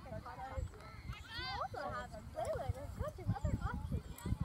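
Girls' voices shouting and calling from across an open soccer field, with one high, loud shout about a second and a half in, over irregular low thumps.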